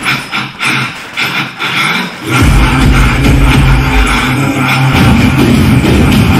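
Loud electronic dance music with a heavy bass. The bass is missing at first and comes back in strongly about two and a half seconds in.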